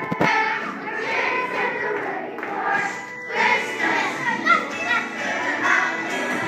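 A group of children singing a song with musical accompaniment, with a single thump just after the start.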